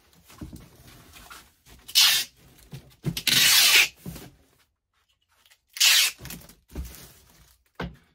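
Low-noise parcel tape pulled off the roll and stuck along a cardboard box, in three strips: a short rip about two seconds in, a longer pull of about a second just after three seconds, and another short rip near six seconds. The 'silent' tape still rips loudly as it comes off the roll.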